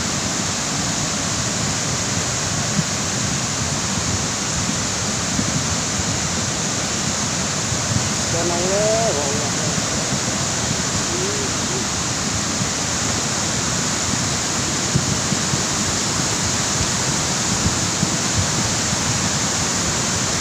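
The swollen Ciliwung River in flood, its floodwater rushing in a steady, unbroken roar; the river is still rising.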